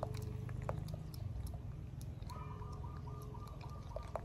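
Close-up ticks and faint rustling of a macaque's fingers picking through a man's hair over a steady low rumble. About halfway through, a bird starts calling in a rapid string of short high notes, about four a second.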